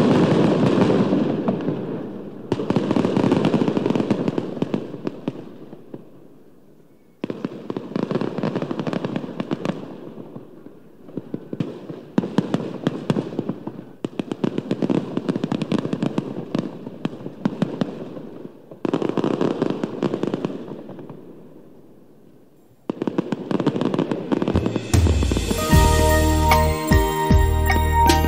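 Repeated bursts of dense crackling, each starting suddenly and dying away over a few seconds, several in a row. Music comes in about a second before the end.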